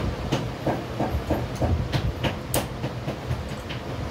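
Irregular light clicks and knocks, several a second, as a rhinestone-covered sandal upper is handled on a stone slab, over a steady low machine hum.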